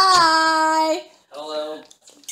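A high voice calling out a drawn-out, sing-song greeting: one long held note for about a second, then a shorter, lower one.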